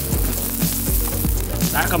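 Small tumble-polished green marble chips rattling and clinking against each other as a hand stirs through the pile, a dense steady clatter.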